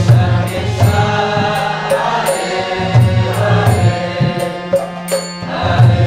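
Devotional kirtan music: a harmonium playing sustained chords under a chorus of voices singing the chant, with a drum and karatala hand cymbals keeping a steady beat.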